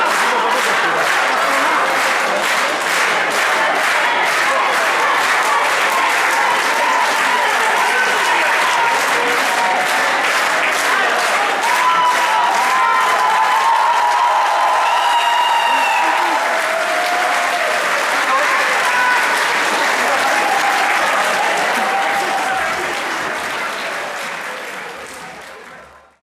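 Concert audience applauding, clapping in an even rhythm at first and then loosening into general applause with shouts from the crowd. It fades out at the end.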